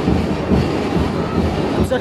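Loud, dense low rumble of a street parade passing close by: the engines of the float vehicles mixed with the din of the crowd.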